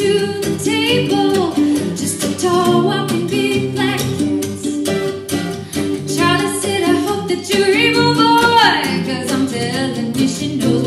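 A woman singing over a strummed acoustic guitar and a mandolin, her voice sliding down in pitch near the end.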